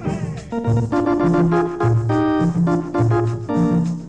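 Electric organ leading a small band in a 1950s Colombian tropical dance tune: held organ chords over a bass line that steps between notes about twice a second.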